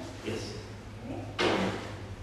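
A bag being set down and slid onto a desk: a short scraping rustle of about half a second, about one and a half seconds in.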